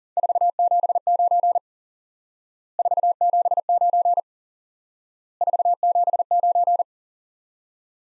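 Morse code at 40 words per minute: a single steady-pitched beep tone keys the signal report "479" three times, in three groups of about a second and a half each, separated by short silences.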